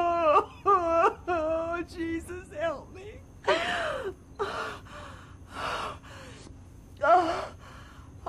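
A woman wailing in sobbing cries, her voice rising and breaking, for about the first three seconds. Then comes a string of loud, breathy gasps and sobs, the last and loudest near the end.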